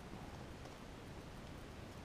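Faint steady hiss of room tone; no distinct click or handling sound stands out.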